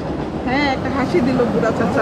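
Low steady rumble of a nearby motor vehicle engine, with a short voice sound about half a second in.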